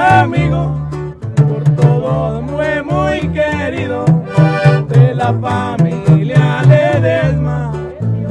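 Norteño band music: an accordion playing melodic runs over bass notes and a steady beat of drum hits, an instrumental break in a corrido.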